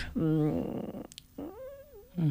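A woman's voice making drawn-out, wordless sounds: a wavering hesitation vowel at the start, then a long held hum near the end.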